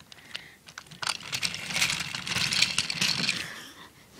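Model toy train engines pushed by hand along plastic track, rattling with many small clicks. The sound starts about a second in and dies away shortly before the end.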